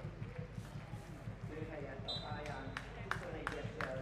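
Faint open-air sound of a football pitch: distant shouts of players and a few short dull thuds of the ball being struck.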